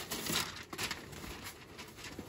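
Brown packing paper crinkling and rustling as it is pulled out of a cardboard box, in soft irregular rustles.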